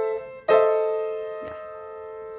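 Upright acoustic piano: a G minor chord, the sixth chord in B-flat major, struck and quickly released, then struck again about half a second in and held, ringing down slowly.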